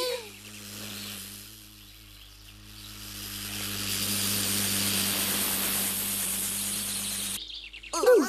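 Cartoon sound effect of a bee in flight: a steady low buzzing hum under a hissing rush that grows louder about three seconds in and cuts off suddenly shortly before the end.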